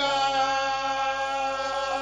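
A man chanting in a full, open voice, holding one long steady note.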